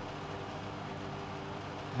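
Steady background hum and hiss with faint steady tones, with no distinct events.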